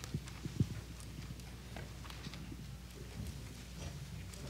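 Bible pages being turned on a wooden lectern: a few soft knocks in the first second, the last one loudest, then faint rustling and ticks, over a steady low room hum.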